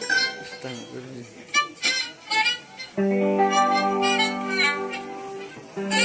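Small acoustic string band of guitars, mandolin and violin playing: scattered plucked notes for the first half, then a steady held chord sets in about halfway through, with plucked notes over it.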